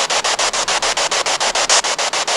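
Spirit box scanning through radio stations: loud static chopped into about seven short bursts a second by the sweep, with no voice coming through.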